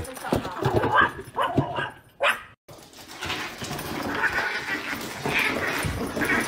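Small dog sounds and scuffling, broken by a brief drop-out about two and a half seconds in; after it, a small dog scratching and clawing at a cardboard box.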